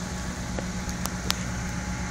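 Vehicle engine idling steadily, a low hum under outdoor background noise, with two faint clicks a little past a second in.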